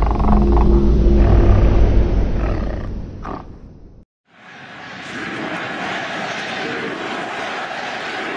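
Logo-intro sound effects: a heavy low rumble with a low held tone, fading out about four seconds in. After a brief silence, a steady hissing swell rises and fades away near the end.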